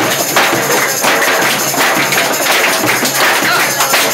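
Live folk band playing an up-tempo tune, with accordion and a busy, driving percussion beat.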